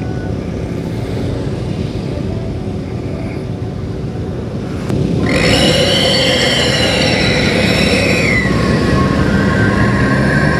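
Motorcycle and car engines idling in traffic at a red light, with steady road noise. About halfway through it gets louder as a sound with several steady pitches joins in, one pitch rising, holding and then falling.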